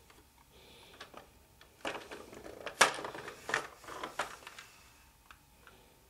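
Hard plastic clicks and knocks from a toy playset's motor pool mechanism and a toy jeep being handled: a cluster of sharp clacks starting about two seconds in, the loudest about three seconds in, dying away by four and a half seconds.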